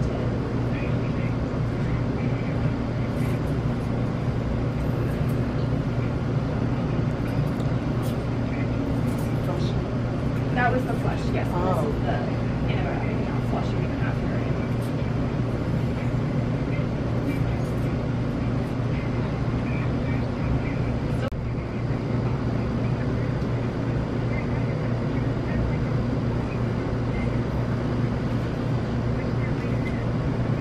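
A steady low hum and rumble, with faint, indistinct voices about ten to twelve seconds in.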